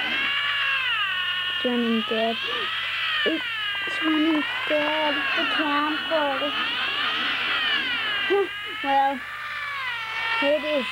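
A high, warbling tone with several overtones that rises and falls in slow, even waves, about one swell every second and a half to two seconds, over fragments of a voice.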